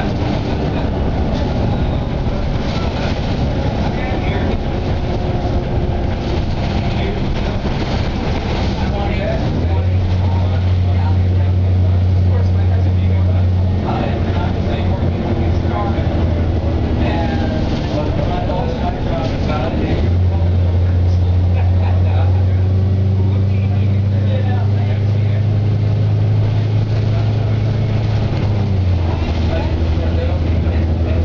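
A 2007 Eldorado National EZ Rider II bus, with its natural-gas Cummins B Gas Plus engine and Allison transmission, heard from inside while driving. A steady low engine drone grows markedly louder twice, about a third of the way in and again from about two-thirds in, as the bus pulls under load. Fainter drivetrain tones slide up and down in pitch.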